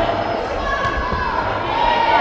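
Voices calling out across a large, echoing sports hall, with dull thuds underneath.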